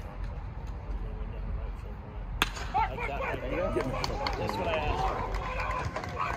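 A low rumble, then a single sharp crack about two and a half seconds in: a baseball bat striking a pitched ball. Distant voices of players and spectators follow.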